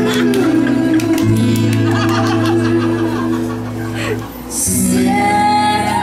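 Live acoustic guitar strummed in chords, accompanying a woman singing into a microphone. The music dips briefly just past four seconds, then the voice holds one long note near the end.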